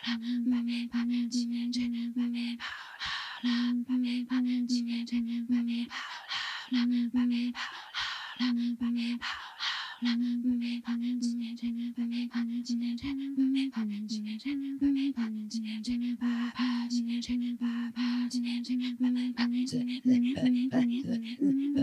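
Inuit throat singing (katajjaq) by two women face to face at one microphone: a held low voiced note broken by quick rhythmic pulses, alternating with breathy rasping stretches. The note steps up, then dips, then settles about two-thirds of the way through.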